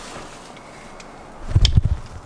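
A faint click, then a quick cluster of thumps and knocks near the end as a house's front door is handled.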